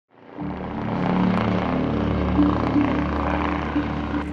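Helicopter flying overhead, a steady drone of rotor and engine that fades in at the start, with held low music notes over it.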